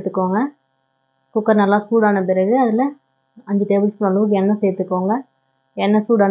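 A woman's voice talking in short phrases, with a steady electrical hum underneath.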